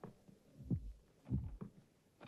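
Slow footsteps of women's high-heeled shoes on bare wooden floorboards: a few separate dull steps at uneven spacing, some in close pairs.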